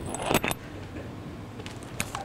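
A quick cluster of clinks and rattles about half a second in: small hard objects being handled close to the microphone. Low room hum follows.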